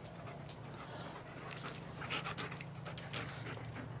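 A dog panting in quick, short breaths while chasing bubbles, the huffs coming thicker and louder in the second half.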